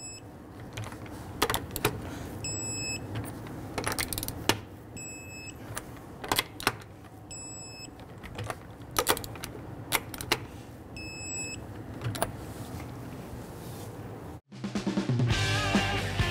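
Click-type torque wrench tightening lug nuts: sharp clicks, often in close pairs, every couple of seconds as each nut reaches 100 ft-lb. Quiet background music runs underneath and turns louder after a brief dropout near the end.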